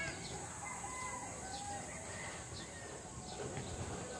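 Birds calling: short, high, falling chirps repeated every half second or so, with a few lower clucking notes, over wind rumbling on the microphone.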